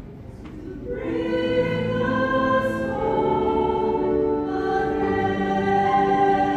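Church choir singing with a wind ensemble. A held chord dies away, then about a second in new sustained chords come in and shift twice.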